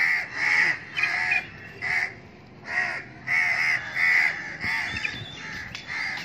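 House crows cawing: a run of short, harsh caws, about two a second, with a brief pause partway through.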